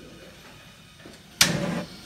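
Gas burner of a vertical shawarma broiler lighting as its control knob is pushed in and turned: a sudden rush of noise about one and a half seconds in as the gas catches, lasting about half a second.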